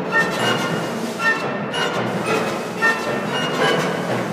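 Symphony orchestra playing a dense, driving passage with bowed strings and brass, punctuated by loud accents about every second or so.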